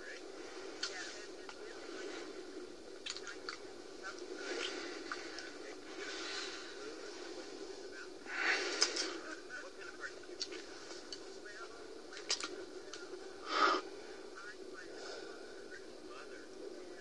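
Soft breaths and murmurs with brief rustles from a quiet film scene, heard through a TV's speaker over a steady hum. Two louder noisy swells come about eight and a half and thirteen and a half seconds in.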